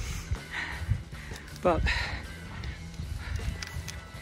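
A man says a single short word over faint background music with low, steady tones.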